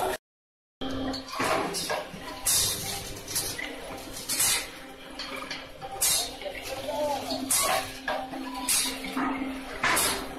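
Paper plate making machine running: a steady motor hum with a short sharp stroke about once a second as the die presses plates. The sound drops out completely for a moment just after the start.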